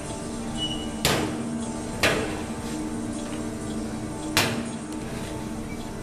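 Steel school lockers clanking three times as their latches and doors are tried, about one, two and four and a half seconds in, over a sustained background music drone.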